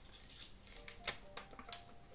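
A folded paper slip being unfolded by hand: a few sharp paper crackles, the loudest about a second in.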